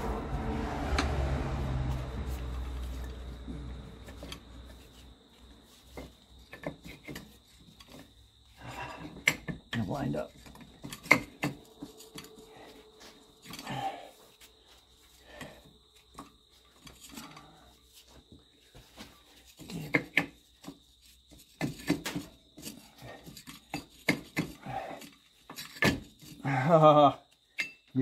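Scattered metallic clicks, knocks and scrapes as a CV axle is pushed and twisted by hand to seat it in the housing. A low hum fades away over the first few seconds, and there is a short grunt-like vocal sound near the end.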